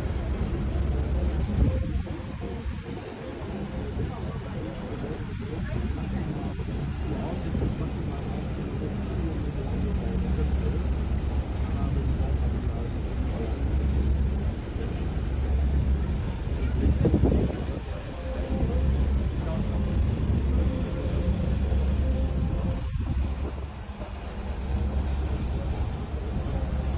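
Low rumble of a moving cruise boat's engine, with wind buffeting the phone microphone so the low end swells and fades every few seconds.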